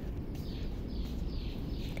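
Birds calling: a quick run of about five short, high, downward-sliding chirps in the first second and a half, over a low steady background rumble.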